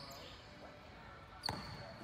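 Faint gym room noise with a single basketball bounce on the court floor about one and a half seconds in.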